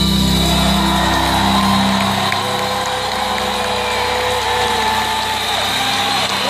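The song's final chord, from a live acoustic guitar set, rings and fades out about two seconds in. Under it, a concert audience applauds and cheers, with a few whistles and whoops.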